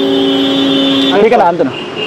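Road traffic at a busy intersection, with a steady held tone lasting about a second and a half before a man's voice resumes near the end.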